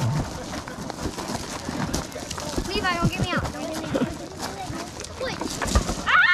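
A group of children shouting and calling out during a gaga ball game, with high-pitched yells about three seconds in and near the end. Scattered short knocks and scuffs from the ball and feet run underneath.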